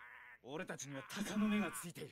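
Speech: an anime character's line in Japanese, the episode's dialogue playing quieter than the reactor's voice.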